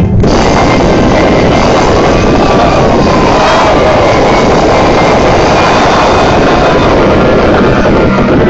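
Live band playing at full volume, heard as a dense, muddy wash of drums and instruments with little separation, a few held notes sliding in pitch through the middle; the uploader calls the sound bad.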